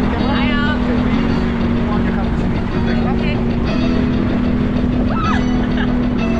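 Wind rushing steadily over the microphone of a camera carried by a tandem paraglider in flight, under background music with low held chords that change every couple of seconds and a brief voice.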